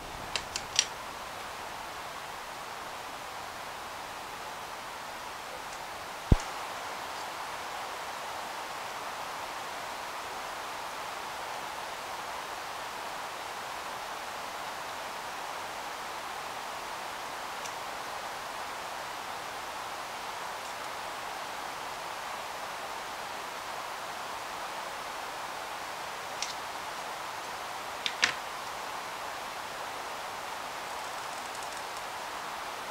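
Steady background hiss with a few small sharp clicks of a precision screwdriver and tiny plastic model-kit parts being handled: one about six seconds in and a couple near the end.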